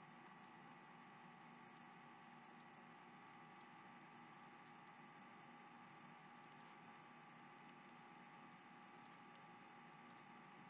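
Near silence: faint steady room hiss and electrical hum, with scattered faint small clicks.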